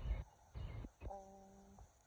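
A brief low rumble on the microphone at the start, then a woman's short, steady hesitant hum, like a held 'mmm', about a second in.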